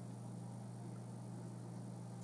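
Faint steady low hum with light hiss, one unchanging tone and its overtone, with no distinct events.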